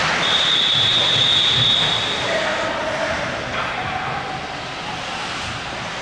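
Ice hockey referee's whistle blowing one long, steady high blast of about two seconds, signalling a stoppage in play.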